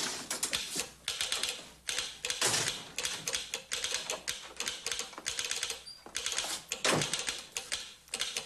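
Telegraph key and sounder clicking out a message in Morse code: quick, irregular runs of clicks broken by short pauses. A heavier knock comes near the end.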